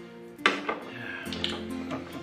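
Glass wine bottle and wine glass knocking and clinking on a table as red wine is served: a sharp clink about half a second in, then a few lighter knocks. Soft background music plays under it.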